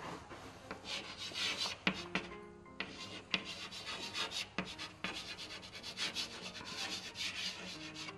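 Chalk writing on a blackboard: a series of short scratching strokes, with a few sharp taps as the chalk meets the board.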